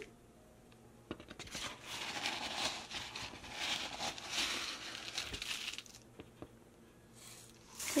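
Dry rolled oats rustling and rattling as a measuring cup is pushed into a canister of oats and scooped full, for about five seconds.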